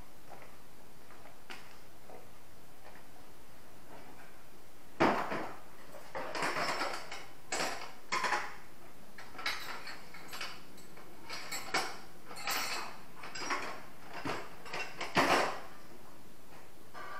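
Hand tools and hard plastic tool cases clinking and clattering as someone rummages through a toolbox and tool bag: a sharper knock about five seconds in, then a run of irregular small clacks and clinks.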